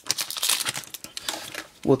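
Foil Pokémon booster pack wrapper crinkling in irregular rustles as it is handled and opened.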